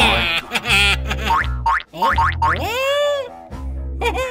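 Upbeat children's background music with a pulsing bass, overlaid with cartoon sound effects: a few quick rising pitch sweeps about one and a half seconds in, then one long boing-like tone that rises and falls near the three-second mark.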